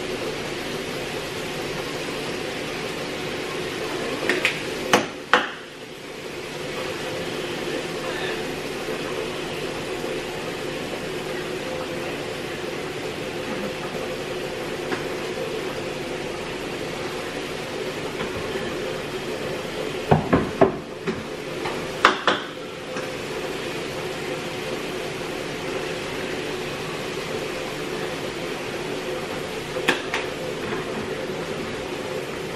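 Ground meat sizzling in a frying pan on an electric stove, a steady noise over a low hum. There are a few sharp knocks of cookware about five seconds in and again between about twenty and twenty-two seconds.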